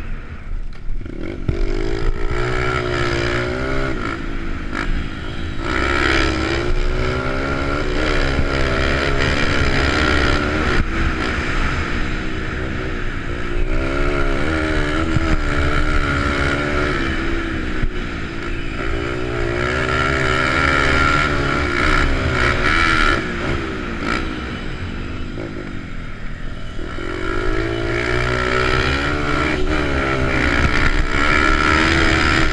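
Onboard sound of a Honda XR100 pit bike's single-cylinder four-stroke engine under way: it revs up, drops back and climbs again about five times as the rider works the throttle and gears.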